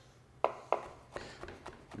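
Chef's knife dicing peeled cucumber on a wooden cutting board: a quick run of about six chops, the first two the sharpest, with lighter, faster ones after.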